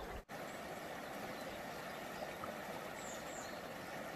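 Shallow stream running over pebbles, a steady rush of water.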